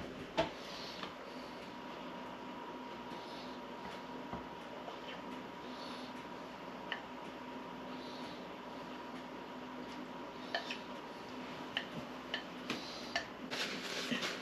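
Cornbread batter being poured from a ceramic bowl into a metal muffin pan: quiet, with a few soft clicks and clinks of the bowl against the pan, more often near the end, over a faint steady hum.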